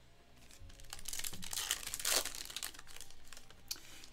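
A foil trading-card pack being torn open and its wrapper crinkled, starting about half a second in and loudest around the middle.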